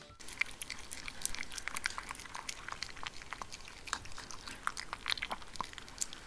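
A maltipoo eating chunky food from a glass bowl: an irregular run of quick wet chewing and smacking clicks.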